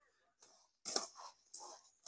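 A hand mixing moistened flaked cornmeal (cuscuz flakes) in a metal pot, a faint gritty rustle in several short irregular scrapes starting about a second in.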